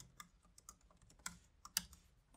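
Computer keyboard being typed on: a string of faint, separate key clicks, a couple of them louder a little past the middle and near the end.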